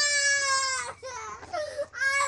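A young boy's tantrum: he is screaming and crying while being forced into bed. It is one long, high wail that falls slowly and breaks off just before a second in, followed by a shorter, lower cry near the end.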